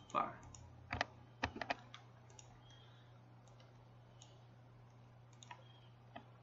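A handful of sharp computer mouse and keyboard clicks, clustered in the first two seconds with a couple more near the end, as text is selected, copied and pasted, over a faint low steady hum.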